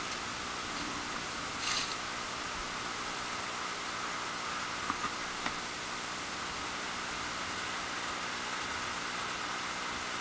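Steady hiss of open-beach background noise, with a short rush of noise about two seconds in and a few faint clicks around the middle.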